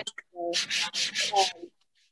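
Sandpaper rubbed briskly back and forth over wood in about five quick strokes, roughly four or five a second.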